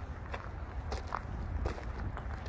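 Footsteps on gravel, a step about every half second, over a steady low rumble.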